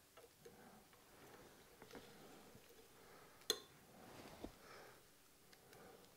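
Near silence with faint handling noise as a kozuka, the small utility knife of a Japanese sword mounting, is slid into its pocket in the lacquered scabbard, with one sharp click about three and a half seconds in and a couple of faint ticks just after.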